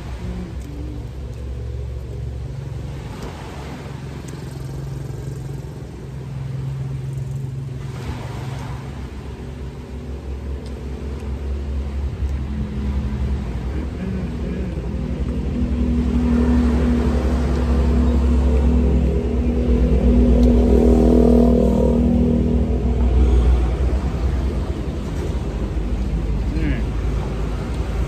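Heavy diesel truck engines running: a steady low hum that grows louder through the second half, as a truck draws near.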